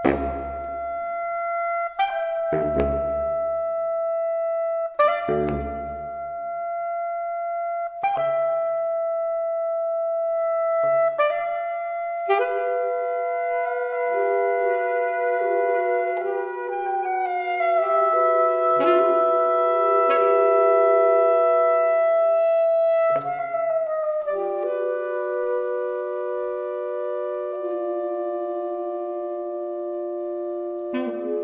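Saxophone quartet playing a microtonal piece. A single held note is cut by sharp, accented attacks every two to three seconds. From about twelve seconds in, the other saxophones enter with sustained notes, forming a close chord whose pitches bend and shift slightly, with another sharp attack near the end.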